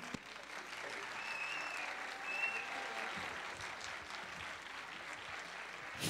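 A theatre audience applauding after a performance. The applause swells a couple of seconds in and then holds steady.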